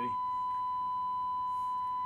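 Steady, unbroken test tone from a Rohde & Schwarz audio generator, transmitted by a Cobra 29 NW Classic CB radio as its modulation is set and heard back through a second radio monitoring the transmission.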